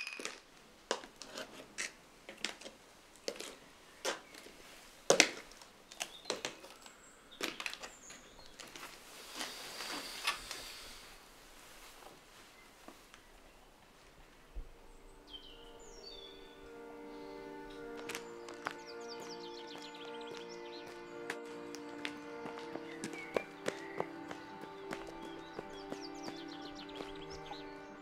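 Sparse footsteps and small knocks of movement on a floor for the first half. About halfway, soft background music of held, sustained notes comes in and grows a little louder.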